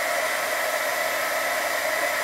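Heat gun running steadily, blowing hot air to warm melted crayon wax and the stylus tool: an even hiss of air with a faint steady whine.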